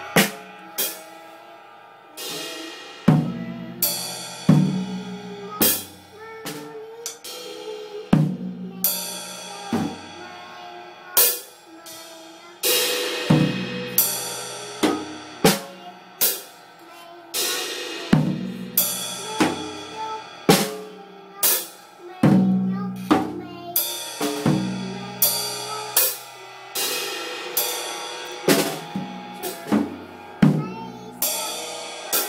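Drum kit played by a small child: uneven, unsteady hits on the drums and cymbals, roughly one or two a second with no steady beat, the cymbals ringing on after many strikes.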